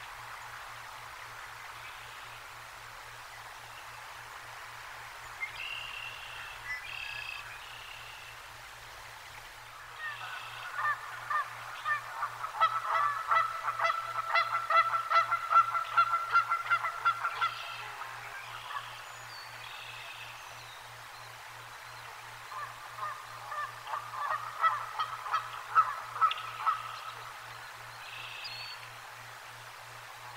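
Birds calling in two loud runs of rapid, repeated notes, the first about ten seconds in and lasting several seconds, the second a little weaker near the end, with a few faint high notes before them.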